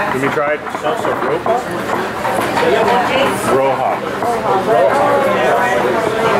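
Speech: a man talking into a handheld microphone.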